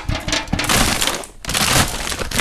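A plastic bag of dry cat food being handled: crinkling plastic and rattling kibble, in two stretches with a short pause about halfway through.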